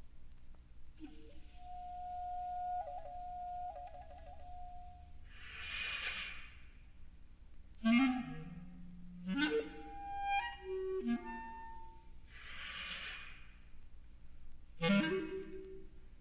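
Clarinet with electronic tape music: a held clarinet note that breaks into a fluttering trill, then short bursts of hiss and rapid flurries of notes with sliding low pitches.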